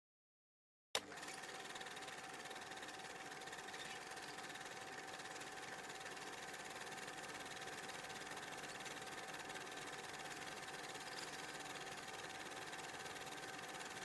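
Dead silence for about a second, then a click and a steady hiss with a faint, even hum tone running under it: background noise on the audio track, with no voice or music.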